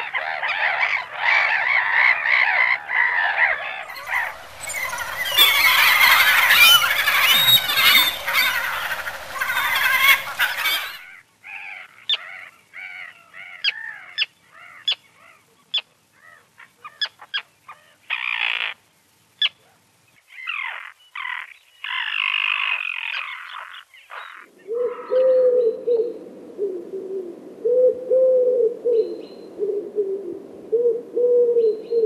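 A run of bird calls. First black-headed gulls call harshly, swelling into a dense colony chorus. Then terns give short, sharp calls with gaps between them. Near the end a common wood pigeon coos in low, repeated phrases.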